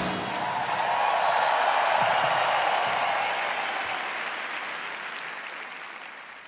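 Large arena audience applauding as the band's last chord stops right at the start. The applause fades out gradually over the last few seconds.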